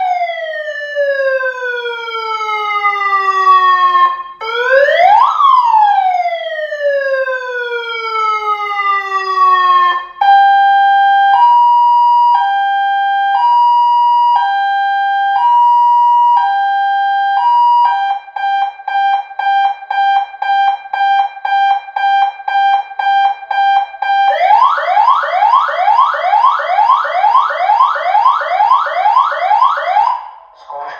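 A 100 W electronic siren through a horn speaker, stepping through its tones. First two long wails, each a quick rise then a slow fall. Then a hi-lo two-tone changing about once a second, a faster two-tone warble, and near the end a rapid yelp of rising sweeps about three a second.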